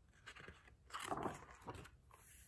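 Faint rustle and scrape of a picture book's paper page being turned by hand, in a few short bursts, the loudest around the middle.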